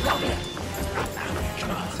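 Film sword-fight soundtrack: orchestral score under a man's bark-like shout, with a few sharp hits about a second apart.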